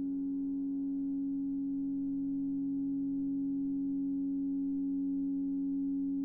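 EBows sustaining grand-piano strings in a steady drone: one strong held tone with a weaker, lower one beneath it, growing very slightly louder, with no new notes struck.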